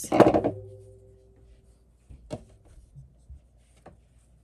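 Metal pliers put down on a wooden tabletop: one sharp clatter at the start, with a short ringing tone that dies away over about a second and a half. A few faint light taps follow as the work is handled.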